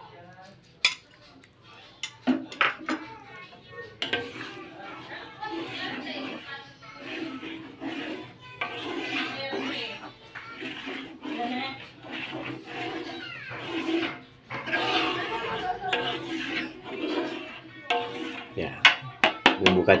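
Metal spatula scraping and knocking against a wok while stirring thick peanut sauce, with a few sharp clinks near the start and again near the end.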